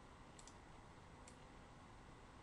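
Faint computer mouse clicks over near-silent room hiss: a quick double click about half a second in, then a single click just past a second.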